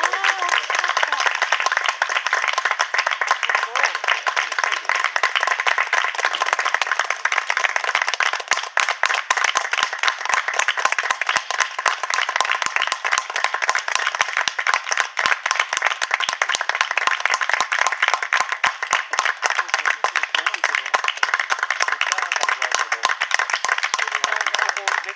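Spectators clapping: a dense, steady applause with many sharp individual claps standing out.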